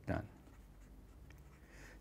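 Faint strokes of a felt-tip marker writing on paper.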